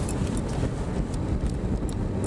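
Car cabin noise while driving: a steady low rumble of engine and road, with a few faint small ticks.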